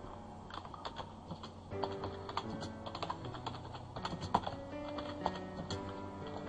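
Computer keyboard being typed on in quick, irregular keystrokes, over background music with slow held notes.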